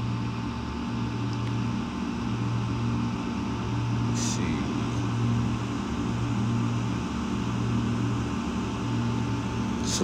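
Steady low mechanical hum with a faint high steady tone over it, and one short hiss about four seconds in.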